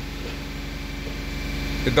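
Audi A8 engine held at a steady raised speed of about 2,800 rpm for an intake manifold runner (swirl flap) adaptation, heard from inside the car as an even drone.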